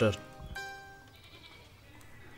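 Soft background music of held notes that fades away within the first second, following the last syllable of a voice; the rest is quiet room tone.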